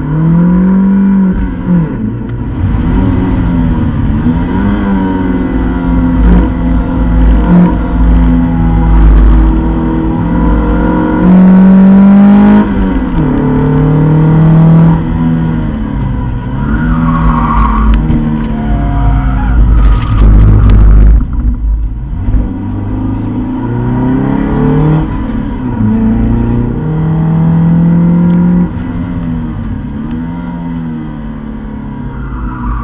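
Opel Speedster's naturally aspirated 2.2-litre four-cylinder engine driven hard on track, heard from inside the cabin: its pitch climbs repeatedly under acceleration and drops back at gear changes and for corners, over a heavy low rumble. A brief dip in the engine sound about two-thirds of the way through.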